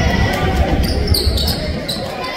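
Basketball game in a gym: a basketball bouncing on the hardwood court amid crowd voices, with short high squeaks a little past halfway.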